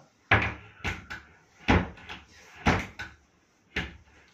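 Tall wardrobe doors with push-to-open catches being pressed shut by hand. They give a series of sharp knocks about a second apart, with a few lighter clicks in between.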